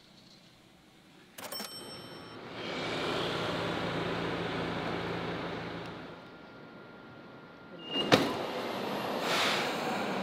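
A steady rushing noise for a few seconds after a brief quiet start. Near the end, a sharp click and then the rushing build of a subway train pulling into the platform.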